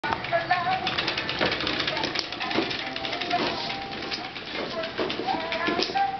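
A plastic push-along baby walker rolling and rattling over a wooden floor, a dense run of small clicks and clatter from its wheels and parts, with short pitched sounds over it.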